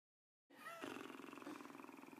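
Half a second of dead silence, then a person stifling a laugh behind closed lips: a brief high squeak, then a faint, low, fast-pulsing buzz.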